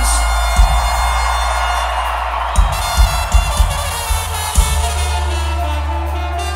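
Live band music: deep bass with punchy kick drum hits and a dense wash of sound above. Near the end a trumpet line starts to come in.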